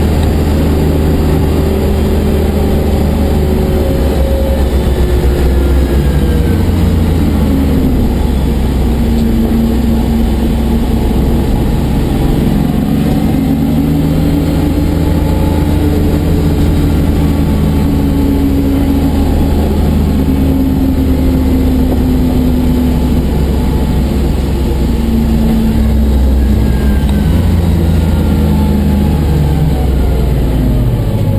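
A 1989 BMW 325i's original M20B25 straight-six running hard on track through a Spec E30 exhaust with aftermarket muffler, heard from inside the gutted cabin. The engine note repeatedly climbs in pitch and drops back as it works through the gears, over steady road noise.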